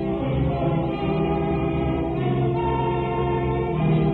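A congregation singing a hymn together in slow, held notes, with organ accompaniment.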